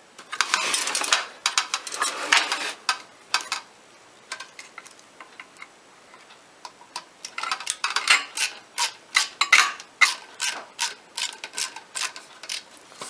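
Screwdriver working a screw out of the receiver's sheet-metal chassis, with clattering of parts at first, a quieter stretch, then a run of sharp metallic clicks in the second half.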